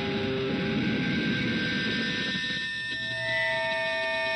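Background music: the droning opening of a song, held tones over a rushing wash, with the chord shifting about three seconds in.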